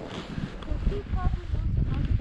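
Skiing through fresh powder snow: a low, uneven rushing rumble of wind on the camera microphone and skis moving through the snow, with a few short voice-like sounds about halfway through.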